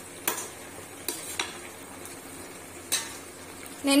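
A spatula stirring mutton pieces and onions in an open metal pressure cooker, knocking against the pot four times over a faint steady sizzle of the frying meat.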